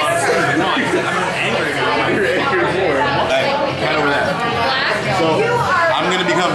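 Chatter of several people talking at once in a busy restaurant dining room, voices overlapping.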